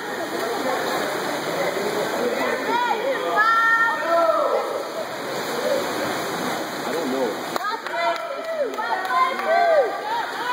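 Swimmers splashing through freestyle strokes in an indoor pool, a continuous rushing of water, with spectators' shouts and calls of encouragement rising and falling over it throughout.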